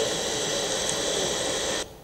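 Steady hiss from the played-back recording of a witness's testimony, with no speech in it, cutting off abruptly near the end as the playback is stopped.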